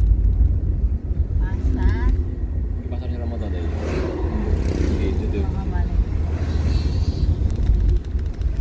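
Steady low rumble of a car's engine and tyres heard from inside the cabin while driving along a road, with voices talking faintly over it.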